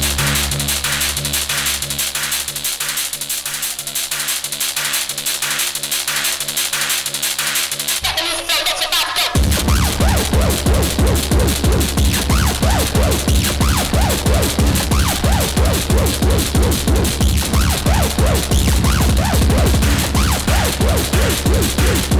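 Early hardcore electronic dance music in a DJ mix: held bass chords over a light ticking beat, then after a short break about nine seconds in, a fast, steady kick drum comes in and pounds on.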